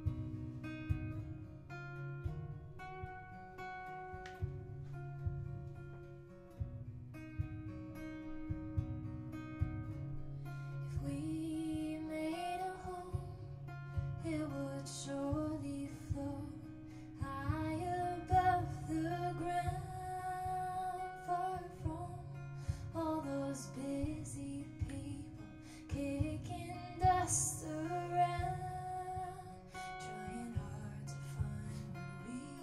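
Acoustic guitar playing a repeating pattern through a loop pedal, joined about ten seconds in by a woman singing.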